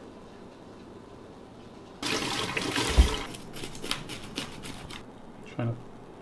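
Kitchen tap running into a stainless steel sink, starting abruptly about two seconds in, with water splashing and a dull thump about a second later, then tailing off into scattered drips and clatter.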